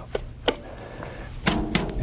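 A paint brush knocked against the rim of a thinner can as the excess thinner is shaken off: a couple of sharp knocks in the first half-second.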